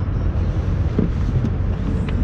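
Steady low outdoor rumble of road traffic, with a faint short sound about a second in.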